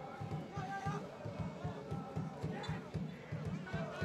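Field-level soccer match sound: a rapid run of low thuds, about five a second, from players running on the pitch, with faint shouts from players and only a light murmur of spectators.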